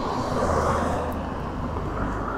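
A road vehicle driving by: a steady rush of engine and tyre noise with a low hum, swelling about half a second in.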